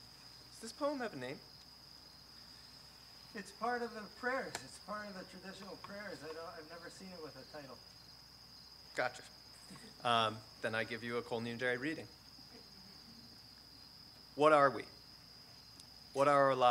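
A steady, high-pitched chorus of crickets runs under a man reading aloud into a microphone. His voice comes in short phrases with pauses between them.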